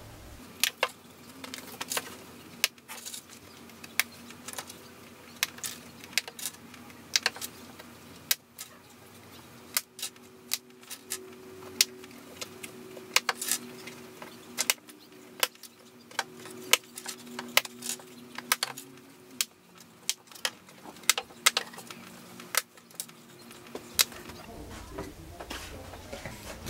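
Small metal pins clicking and clinking as they are handled and pushed back through an apron stretched over a canvas: irregular short, sharp clicks, about one or two a second, with a faint steady hum behind.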